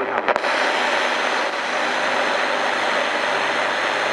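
National RX-F3 radio cassette recorder tuned off-station: a few sharp clicks about a third of a second in, then steady radio static hiss from its speakers, with no broadcast coming through.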